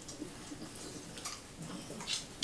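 Faint, irregular clicking and crunching of a pet eating.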